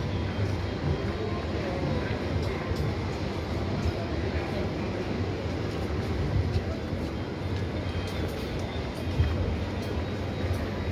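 Busy outdoor street ambience: a steady low rumble, with music and people's voices in the background.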